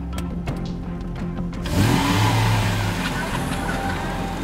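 Dramatic background music, then a little under two seconds in a car engine suddenly revs up under a loud rushing noise of a speeding car.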